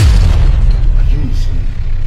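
A dramatic boom sound effect: a sudden loud hit with a quick falling sweep that carries on as a deep rumble.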